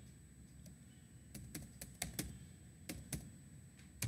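Faint keystrokes on a computer keyboard: about eight separate clicks at an uneven pace, as a search query is deleted and retyped.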